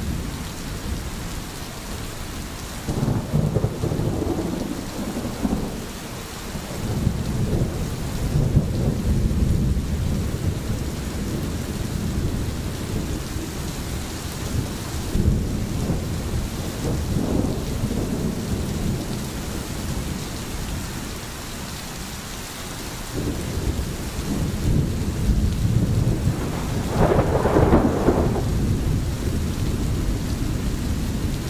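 Steady rain with distant rolling thunder: low rumbles swell and fade several times over the constant rain, the loudest rumble near the end.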